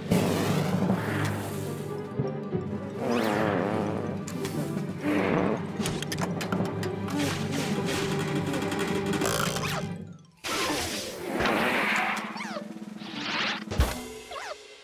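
Cartoon soundtrack: music with whooshing swoosh effects for a creature whizzing through the air. It breaks off suddenly after about ten seconds, then comes back with more swooshes and falling whistle glides, and ends in a crash-landing thud near the end.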